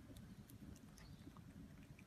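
A cat eating cubes of avocado: faint, scattered soft clicks of chewing and mouthing.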